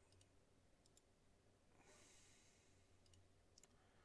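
Near silence: room tone with a few faint computer-mouse clicks and a soft breath about two seconds in.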